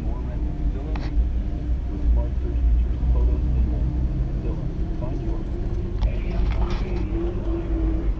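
1959 Chevrolet Bel Air engine and road noise heard from inside the cabin while driving slowly: a steady low rumble throughout.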